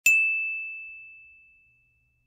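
A single bright chime struck once, ringing on one clear high tone that fades away over about a second and a half.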